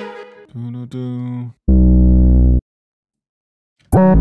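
A drill beat played back from FL Studio stops, followed by notes previewed one at a time: a softer pitched note, then a loud, deep bass note held for about a second. After a gap of silence the full beat, hi-hats and heavy bass, starts again near the end.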